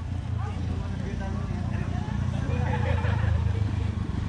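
Motorcycle running at low speed, a steady low drone, with voices heard faintly around the middle.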